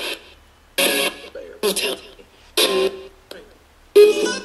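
Ghost box sweep: short chopped fragments of radio-like speech and music, each about half a second long and coming roughly once a second with quiet gaps between, played through a speaker with echo added.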